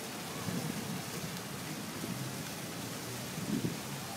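Water jets of a large fountain splashing into its basin: a steady, even rushing hiss like rain, with some uneven low rumbling underneath.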